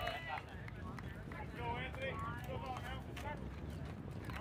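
Unintelligible voices of people at the ballfield calling out during a play, over a steady low background rumble.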